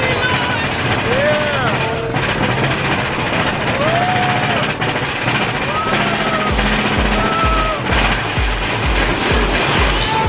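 Theme park ride train running through a dark tunnel: a steady rumble with short rising-and-falling tones over it, and from about two-thirds of the way in a regular low clank about twice a second.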